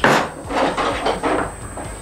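A kitchen drawer knocked open with a sudden loud thump, then a few lighter knocks and clinks as a knife is taken out.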